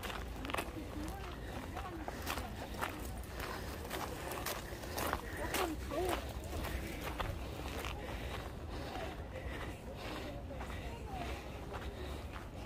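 Footsteps of someone walking, with people's voices talking in the background.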